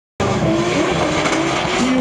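Two Nissan drift cars in a tandem run, engines held at high revs with tyres squealing as they slide. The sound cuts in abruptly just after the start and then holds loud and steady.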